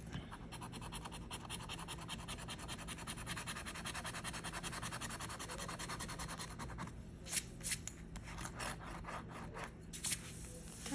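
A coin scratching the coating off a scratch-off lottery ticket in rapid, even back-and-forth strokes for about seven seconds, then a few separate, louder strokes.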